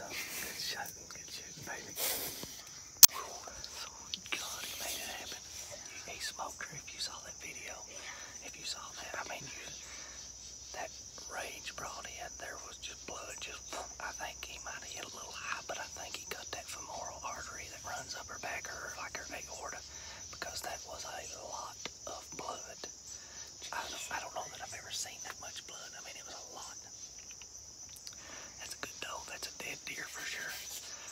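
Two people whispering excitedly, over a steady high-pitched chorus of insects. A single sharp click about three seconds in.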